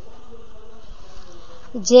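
A pause in the speech filled only by a faint, steady background hum and hiss, with a voice starting again near the end.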